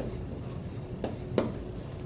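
Dry-erase marker writing on a whiteboard: a few short strokes and taps, the sharpest about one and a half seconds in.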